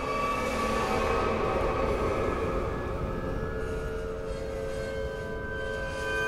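Chordeograph, a piano's string frame whose field of strings is set vibrating by a strip drawn across them, sounding a dense drone of many overlapping held tones over a rushing wash. It swells in the first two seconds and eases slightly, with new tones coming in near the end.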